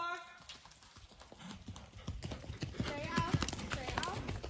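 Horse's hoofbeats on the sand footing of an indoor arena, a steady rhythm that grows louder as the horse comes up close.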